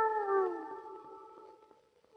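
Film background score: a single held note with overtones, in a theremin-like timbre, slides downward and fades away, dying out shortly before the end.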